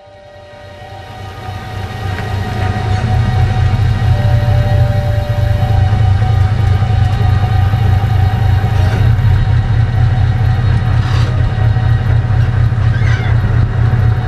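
Old Ford pickup truck's engine idling: a steady, deep rumble that fades in over the first few seconds and then holds even.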